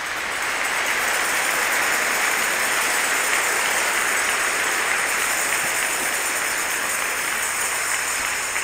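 A congregation applauding, the clapping building over the first second and then holding steady.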